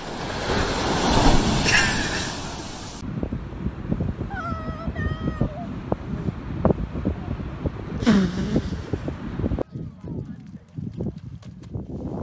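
A wave breaking and surf washing in for about three seconds, then cutting off. After that comes wind on the microphone with a few knocks and a brief wavering voice, and another short loud burst near the end.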